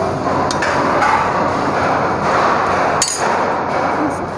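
Stainless-steel serving spoons, pots and compartment plates clinking and knocking, with a sharp metal knock about three seconds in, over a steady background din.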